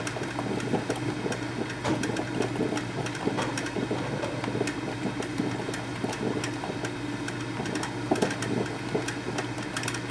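Black & Decker thermal carafe drip coffee maker brewing: irregular gurgling and sputtering as its heater pushes water up to the brew basket, with scattered sharp pops over a steady low hum.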